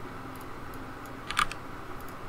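Computer keyboard keys clicking: a couple of faint taps, then a louder cluster of keystrokes about one and a half seconds in, over a steady faint background hum.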